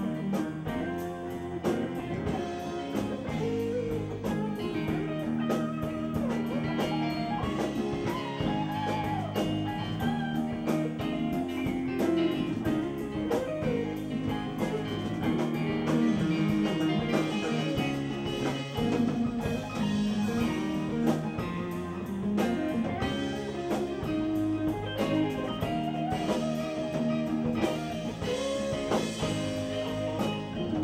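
Live blues-pop band playing an instrumental passage: electric keyboard, electric guitar, bass and drum kit, with no singing.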